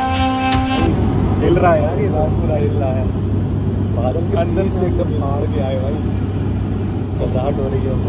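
Steady drone of a jet airliner cabin in flight, engine and airflow noise with a low hum, under background music that cuts off about a second in.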